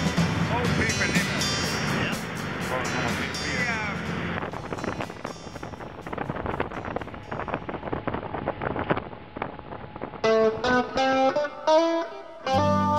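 A rigid inflatable boat running fast over open sea: a steady rush of motor, wind and spray, with voices and music over it in the first few seconds. A plucked guitar tune starts about two seconds before the end.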